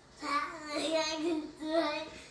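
A young child singing in a high voice, in two short phrases.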